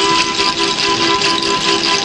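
Harmonica played in a steady rhythm: a two-note chord pulsed over and over, about three times a second, over a breathy hiss.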